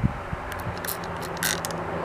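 Hand trigger spray bottle squirting water with dish soap and peppermint oil: a couple of short hisses of mist, with the clicking of the trigger pump.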